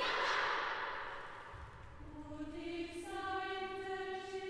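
Girls' choir: a dense mass of voices with no clear pitch fades away over the first two seconds, then long held notes enter, a low one first and higher ones about a second later, building into a chord.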